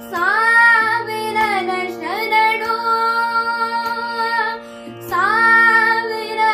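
A boy singing a Kannada song in long held phrases that slide up into each note, at the start, about two seconds in and again near the end. A steady drone, likely from an electronic shruti box, sounds under the voice throughout.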